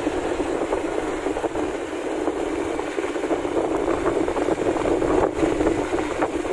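Steady rush of wind and road noise from a vehicle travelling along a narrow, rough rural road, with the vehicle's engine running underneath.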